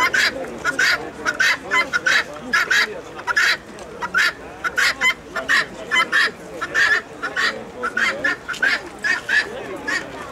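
Caged poultry calling over and over in short, loud calls, about two or three a second, with a murmur of people's voices underneath.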